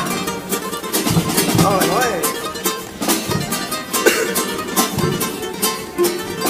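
A carnival comparsa's Spanish guitars play a strummed instrumental passage with a steady, even rhythm. A short wavering pitched line comes through about two seconds in.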